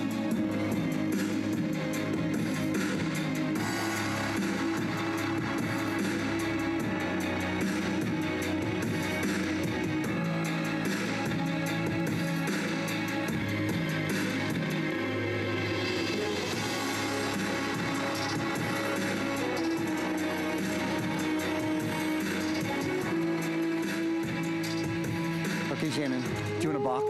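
Guitar-driven music with a steady, repeating bass line, played through a Bose Wave Music System IV.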